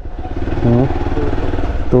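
Motorcycle engine running at low speed as the bike is ridden slowly, with a steady low rumble underneath.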